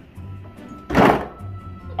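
A stainless-steel refrigerator door being pulled open, heard as one short noisy burst about a second in, over steady background music.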